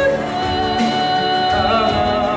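Live church praise band performing a worship song: several singers on microphones holding long notes over acoustic guitar and keyboard.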